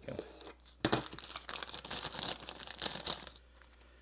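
Thin plastic parts packet crinkling and tearing as it is slit open and handled, with one sharper crackle about a second in; the rustling stops about three and a half seconds in.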